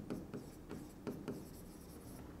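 Chalk writing on a blackboard: several short, faint strokes and taps as figures are written.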